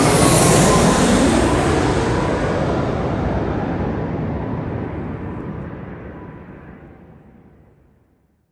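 A loud rushing rumble with a faint whine that sinks slightly in pitch near the start, fading out gradually over about seven seconds, the hiss dying away before the low rumble.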